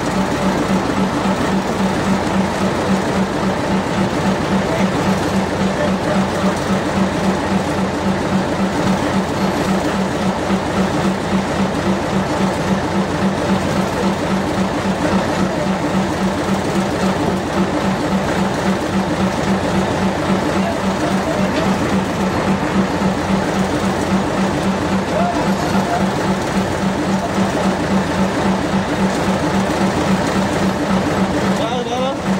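A boat engine running steadily, with an even, rapid throb that never changes speed.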